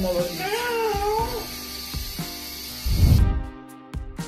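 A cat meowing in one long, wavering, distressed yowl over the first second and a half, over background music. About three seconds in there is a brief loud low rumble.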